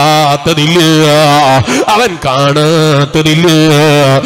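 A man chanting into a microphone in a drawn-out, melodic voice: long held notes with a wavering pitch, broken by a short pause for breath about halfway through.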